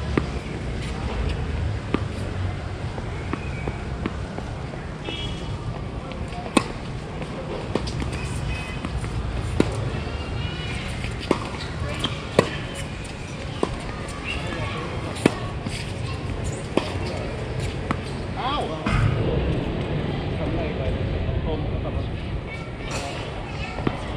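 Tennis ball being struck back and forth with racquets in a doubles rally, a sharp pop every second or two, over faint voices.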